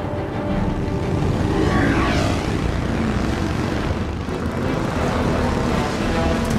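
Several motorcycle engines running at speed, with one sweeping pass-by about two seconds in, mixed with film score music.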